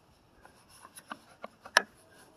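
Plastic end cover of a roof-rack crossbar foot being pressed down and snapped into place by hand: a few faint clicks and taps, with one sharper click near the end.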